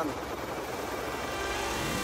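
Small electric toy helicopter's rotor whirring with a fast, low pulsing beat as it flies off.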